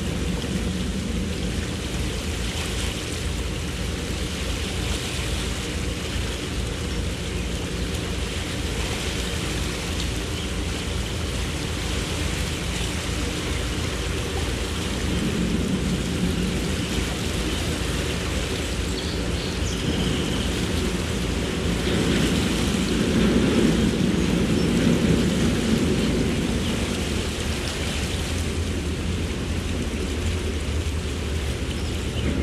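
The boat's 7.4-litre Mercruiser inboard engine running steadily at slow cruising speed, with a steady rushing noise over it. The engine sound swells for a few seconds after the middle, then settles back.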